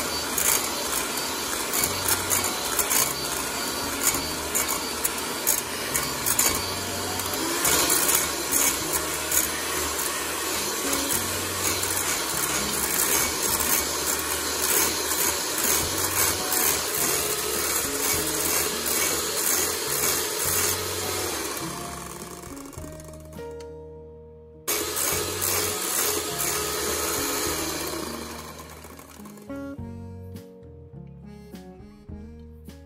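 Electric hand mixer running, its wire beaters whipping egg whites toward stiff peaks and clicking against a stainless steel bowl. It cuts out about 23 seconds in, starts again a second later, then fades away near the end, with background music underneath.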